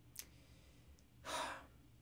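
A faint mouth click, then, a little over a second in, a man's short, breathy sigh lasting about half a second.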